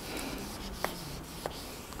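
Marker writing on a flip chart: a faint rubbing of the tip across the board, with two short clicks about a second in and again half a second later.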